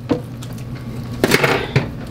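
Kitchen handling noise: a short click near the start, then a brief clatter of utensils and cookware about a second in, over a steady low hum.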